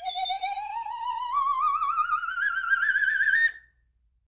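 Electronic end-card sound effect: one warbling tone with a steady vibrato, gliding slowly upward for about three and a half seconds, then cutting off.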